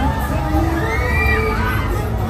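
Riders screaming on a swinging pendulum fairground ride, several high rising-and-falling screams through the middle, over crowd chatter and fairground music with a heavy bass.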